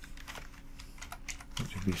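Typing on a computer keyboard: an uneven run of quick keystrokes.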